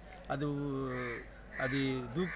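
A man's voice holding a long drawn-out vowel for about a second, sliding slightly down in pitch, then starting another word near the end.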